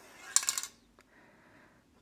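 A quick cluster of sharp metallic clinks from a handled aerosol spray-paint can about half a second in, followed by a single faint click about a second in.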